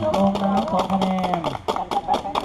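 Drawn-out calls from people at a basketball court, two long held shouts in the first second and a half, over a run of sharp clicks and knocks.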